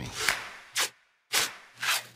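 Cloth boxing hand wraps being pulled and wound around a hand: a few short rubbing swishes, with a sudden drop-out to total silence about a second in.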